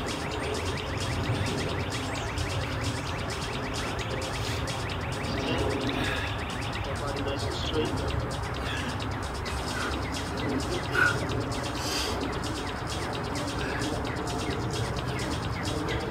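Steady outdoor background noise with scattered short bird chirps every few seconds.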